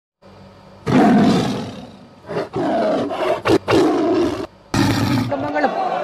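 Three loud roars, each about a second long, of the kind tagged as a big cat's. They are followed near the end by a voice.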